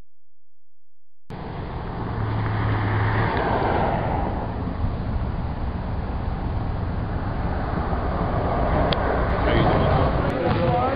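Road traffic: cars going by on a nearby road, a steady rushing noise that starts suddenly about a second in and swells over the next couple of seconds.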